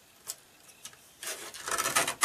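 Sliding paper-trimmer blade scraping along its rail as it cuts a card panel. After a near-quiet start with a couple of faint ticks, the rasping cut begins a little over a second in and grows louder toward the end.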